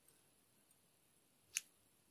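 Near silence broken by one short, sharp click about one and a half seconds in, made while the knitted pieces are being handled.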